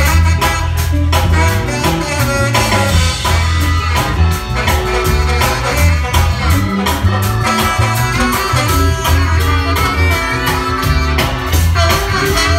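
Live ska band playing in a club, with drum kit, bass line and electric guitar.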